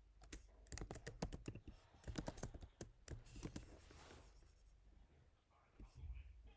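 Computer keyboard typing: a quick, irregular run of key clicks through the first half, then a few fainter clicks near the end.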